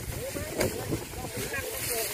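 Faint voices talking at a distance over a low, steady rumble.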